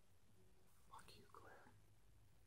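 Near silence: room tone, with a faint, brief sound about a second in.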